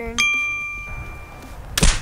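A single bright bell-like ding that rings and fades over about a second and a half, the kind of chime an editor drops in at a cut. Near the end comes one short, sharp whack.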